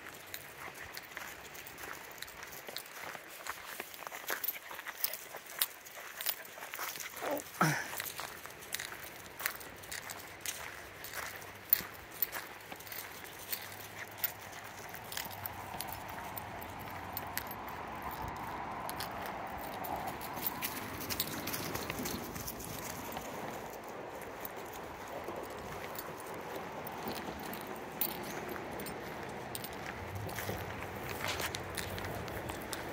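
Footsteps on a gravel trail, a steady run of short scuffs and steps. A brief sliding vocal sound comes about seven seconds in, and from the middle a faint steady rushing, the river, rises under the steps.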